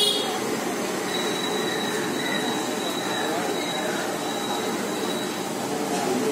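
Steady background din of a roadside food stall, with faint voices and a thin high whine held from about a second in until near the end.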